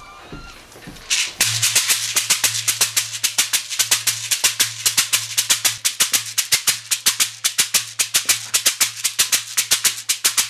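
Shekere (a gourd shaker wrapped in a net of beads) shaken in a fast, steady rhythm, starting about a second in. A low steady hum runs beneath it.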